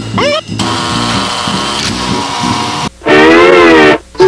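Guitar music: a quick rising slide, then a strummed passage, and near the end a loud sustained twangy note that bends up and back down.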